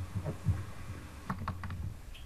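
A quick run of about four sharp computer mouse clicks, about a second and a half in, over a low steady hum, with a thump about half a second in.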